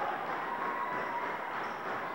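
Steady murmur of a gymnasium crowd during live basketball play, with a faint short high squeak a little after half a second in.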